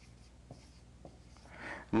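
Dry-erase marker writing on a whiteboard: faint strokes and a few light ticks as the marker touches the board.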